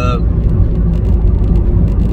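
Steady low rumble of road and engine noise inside a van's cabin at highway speed, with the tail of a drawn-out spoken "uh" at the very start.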